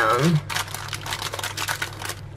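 A silicone spatula pats and scrapes thick, crumbly coconut flour batter flat in a loaf tin lined with baking paper. It makes a quick run of irregular short scrapes and paper crinkles, starting about half a second in.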